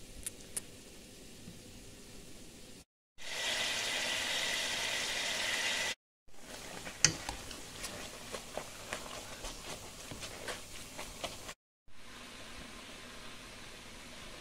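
Ground beef browning in hot olive oil in a pot, heard in short takes broken by brief silences. It is quiet at first with a couple of clicks, then a loud steady sizzle for about three seconds. After that come frequent clicks and scrapes of a utensil breaking up the meat over a low sizzle.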